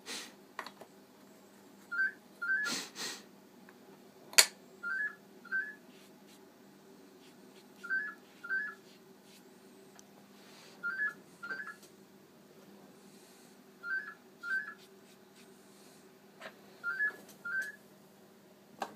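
Telephone ringing with the British double-ring cadence, two short rings every three seconds, six times: an incoming call. A few knocks and clicks of handling sound over it, the sharpest about four seconds in.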